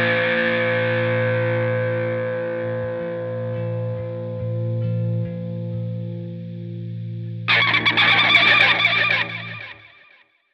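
Final chord on a distorted electric guitar with effects, held and slowly fading. About seven and a half seconds in, a sudden harsh, noisy sound cuts in, the loudest thing here, and stops after about two seconds.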